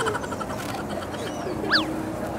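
Outdoor street background noise, with a single short chirp that rises and falls in pitch near the end.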